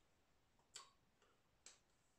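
Near silence, with three faint, short clicks from a person signing: one a little under a second in, a weaker one, and another shortly before the end.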